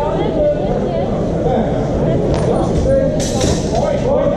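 Continuous talking of several people echoing in a large hall. Near the end, a short, bright burst that fits steel longswords meeting as the two fencers close.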